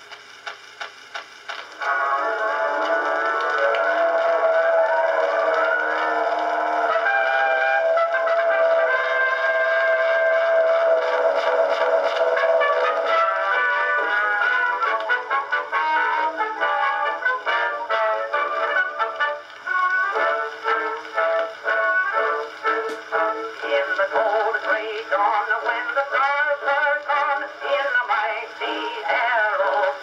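An Edison Blue Amberol cylinder record playing on an Edison cylinder phonograph, with the thin, boxy sound of an acoustic recording. It opens with surface noise that ticks about three times a second, once a turn of the cylinder. About two seconds in, the orchestra's introduction begins, and from about halfway a man's voice comes in singing.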